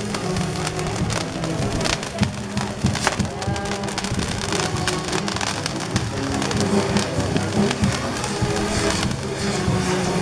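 Dense crackling and popping of fireworks fountains and spinners burning on a bamboo fireworks tower, over music that plays throughout.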